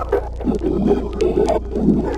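Distorted horror sound effect: wavering, grainy mid-pitched groaning over a steady low hum, with scattered crackles.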